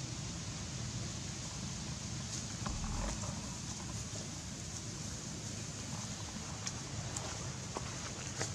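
Steady outdoor background noise with a low rumble, with a few faint rustles and clicks from movement in the grass and a brief stronger rumble about three seconds in; no monkey calls.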